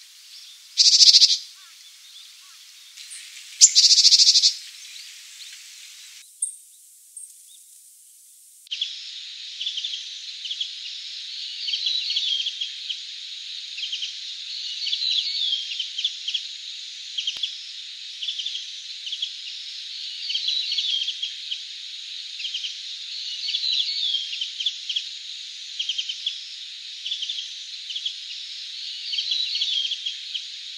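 A Japanese tit gives two loud, high calls about one and four seconds in. After a short pause, Japanese white-eyes call over a steady hiss: repeated short chirps and twittering kyuru-kyuru phrases.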